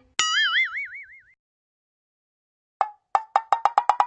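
Cartoon "boing" spring sound effect: a wobbling tone that dies away over about a second. Near the end comes a quick run of about ten short pitched taps that speed up.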